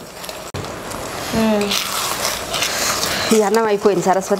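A steady hiss from a steaming steel pot on a gas stove, lasting about a second and a half in the middle, between short bits of talk.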